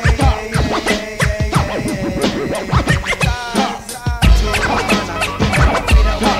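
Hip-hop beat with turntable scratching over the drums. About four seconds in, a deep bass comes in and the beat gets louder.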